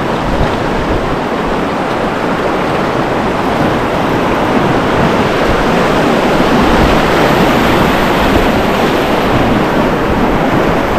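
Whitewater rapids rushing steadily around a kayak, heard from the boat itself, with wind buffeting the microphone.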